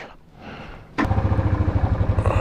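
Royal Enfield Thunderbird's single-cylinder engine starting about a second in, then running with a steady, fast low thump.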